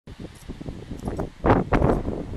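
Wind buffeting the microphone in irregular low rumbling gusts, with two strong surges in the second half.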